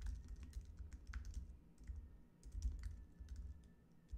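Typing on a computer keyboard: irregular quick key clicks over a low rumble.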